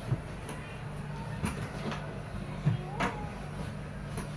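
Cotton bed sheet rustling with a few soft knocks as a fitted sheet is pulled and tucked over a mattress, the loudest knock about three seconds in, over a steady low hum.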